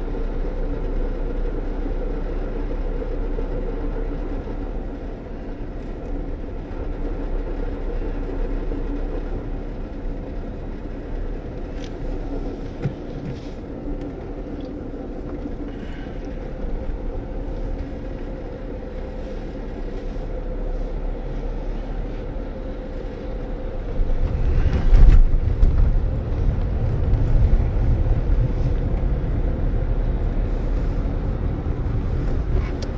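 Engine and road noise heard from inside a moving car: a steady hum over a low rumble, with the rumble growing louder and deeper about three-quarters of the way through.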